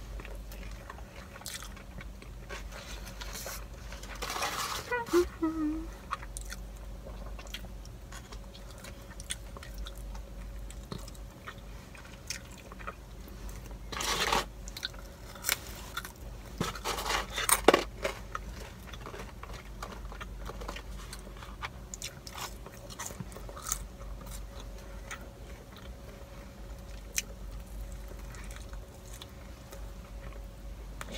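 Close-miked eating of a burger and fries: chewing and mouth clicks, with louder crackles of the paper wrapper about four, fourteen and seventeen seconds in, over a steady low hum.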